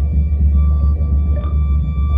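Live improvised music from viola, electric guitar and drums: a loud, sustained low drone with several steady high held tones above it.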